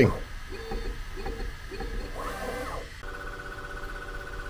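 Bambu Lab P1P 3D printer's stepper motors running its first calibration routine: a run of short, evenly spaced motor hums, then a whine that rises, holds and falls about two seconds in. About three seconds in, this gives way abruptly to a steady high-pitched whine.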